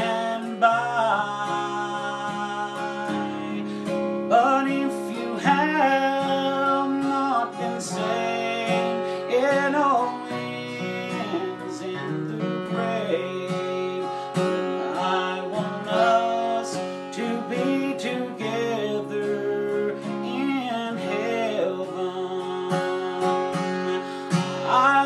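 Acoustic guitar playing an instrumental break in a gospel song: a picked lead melody with slides and bends over steady chords.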